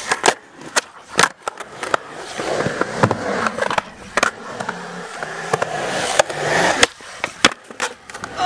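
Skateboard rolling on concrete, the wheels giving a steady rumble broken by a string of sharp clacks and smacks as the board is popped, hits and lands.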